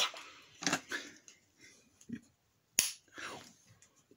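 Hard plastic parts of a Power Rangers Megazord toy clicking and snapping as they are twisted into place during transformation. A handful of sharp clicks, the loudest nearly three seconds in.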